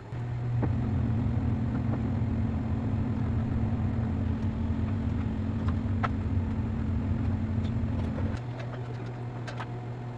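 A steady low machine hum that drops to a quieter, steadier hum about eight seconds in, with a few light clicks.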